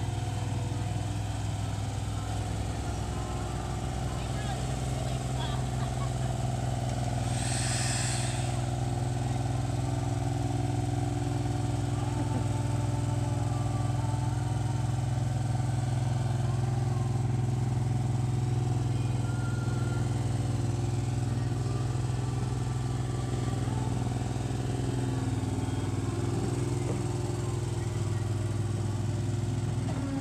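Wacker Neuson ride-on drum roller's engine running steadily as the roller drives slowly, with a brief hiss about eight seconds in.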